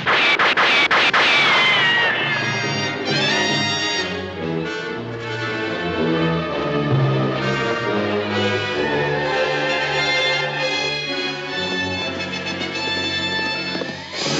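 Gunshots at the very start, one ricocheting off rock with a long falling whine over about two seconds, and a second shorter falling whine soon after. A film score runs under it and carries on through the rest.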